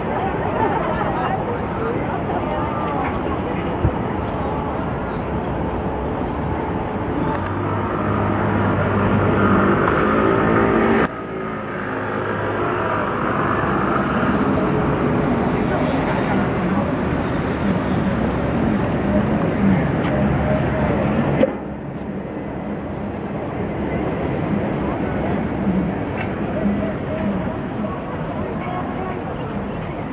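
City street ambience: road traffic running past with people's voices and chatter mixed in. The sound changes abruptly twice, about a third and two thirds of the way through, at cuts in the recording.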